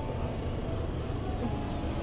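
Steady low rumble of wind on a phone's microphone.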